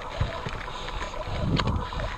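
Giant Trance full-suspension mountain bike grinding up a rocky dirt singletrack: tyres on dirt and rock with bike rattle, a low rumbling surge and a sharp knock about one and a half seconds in, and wind on the microphone.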